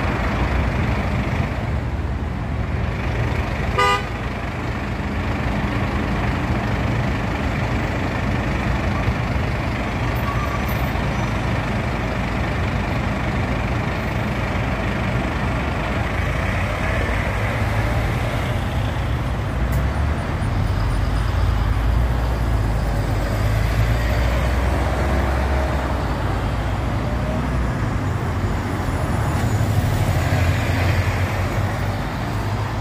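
Street traffic with buses and cars passing close by, their engines and tyres giving a steady rumble. A short horn toot comes about four seconds in, and a heavier low engine rumble builds from about two-thirds of the way through as a bus passes.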